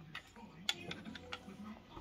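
A few faint, light plastic clicks as a LEGO panda figure is hopped and set down on the bricks of a toy treehouse.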